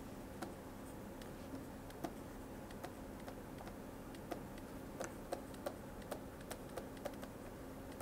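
Faint, irregular clicks and taps of a pen stylus on a tablet's writing surface as handwriting is written, coming more often in the second half, over a low steady hum.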